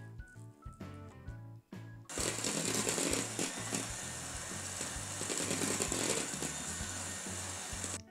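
Background music with a steady beat; about two seconds in, an electric hand mixer starts and runs steadily, its beaters whisking coffee into cake batter.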